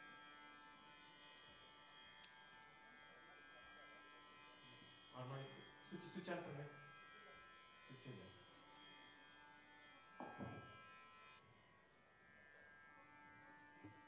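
A faint steady electrical buzz from the stage amplification, made of many held tones together, cutting off suddenly near the end. A few brief faint knocks or murmurs come around the middle.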